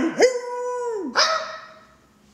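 A dog howling: one long, steady call that slides down in pitch about a second in, then a shorter second call that fades away.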